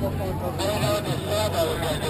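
People talking nearby, their words indistinct, over a steady low mechanical hum.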